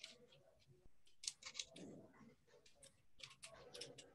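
Near silence on a video call, with faint scattered clicks in small clusters.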